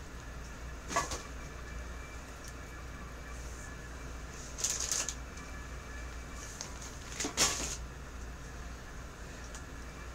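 Bag rustling and items being handled in three short bursts, about a second in, around five seconds and around seven and a half seconds, over a steady low hum.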